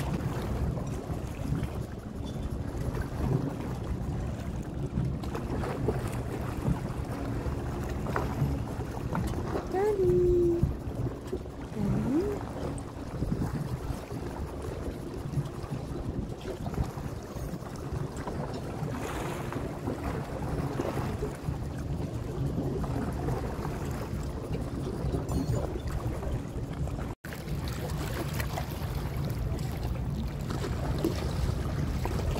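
Wind rumbling on the microphone over a steady low hum, with two short pitched, voice-like glides about ten and twelve seconds in. The sound drops out for an instant near the end.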